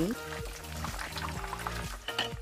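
Oil sizzling and crackling faintly in a frying pan around a breaded pork cutlet and tiger prawn, under steady background music.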